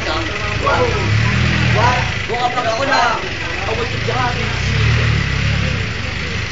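Several people's voices chattering and calling out over one another, over a low rumble that swells and fades every couple of seconds.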